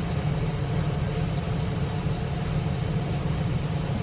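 Steady low background rumble with a faint, even hiss.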